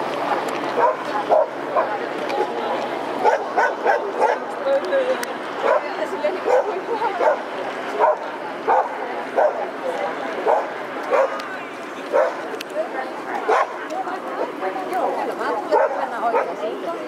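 People talking, with a dog barking repeatedly in short, high yaps.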